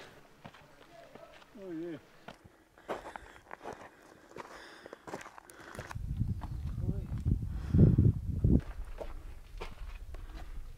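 Footsteps on stone steps, a scatter of short scuffs and taps. About six seconds in, an uneven low rumble sets in and runs on.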